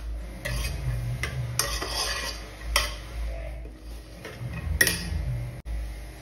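Steel spoon stirring and scraping diced bottle gourd in an aluminium pressure cooker, in irregular strokes, with two sharper clinks of metal on metal, one midway and one about a second before the end.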